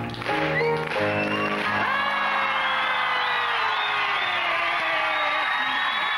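The accompaniment plays its closing chords, which end about a second and a half in. A studio audience then claps, cheers and whoops.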